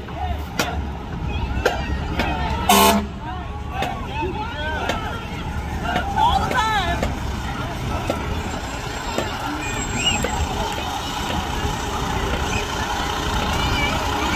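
Parade street sound: a steady low rumble of vehicle engines under the voices of people along the route, with one short, loud vehicle horn blast about three seconds in.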